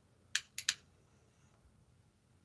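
A lighter struck three times in quick succession, sharp clicks, as it is used to relight a tobacco pipe.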